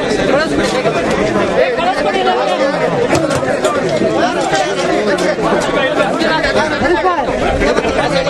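Many people talking at once: a steady, loud babble of overlapping voices, with no single speaker standing out.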